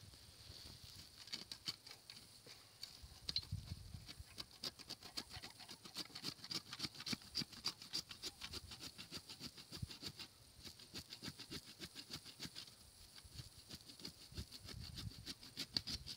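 Hand pruning saw sawing through oak roots in stony soil: quick, rasping back-and-forth strokes with a couple of short pauses, cutting the roots that still hold the tree in the ground.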